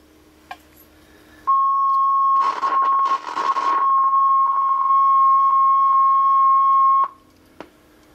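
A 1967 Panasonic RQ-706S reel-to-reel tape recorder starting playback. A light click comes as the play lever engages. A steady high beep-like tone then plays from the tape for about five and a half seconds, with a brief burst of hiss in its first seconds, and cuts off suddenly.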